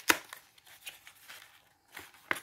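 A cardboard packet of metallic markers handled on a table: a sharp tap just after the start, then faint rustling and small ticks.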